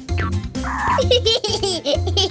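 Cartoon baby giggling from about a second in, just after a brief noisy sound effect, over background music.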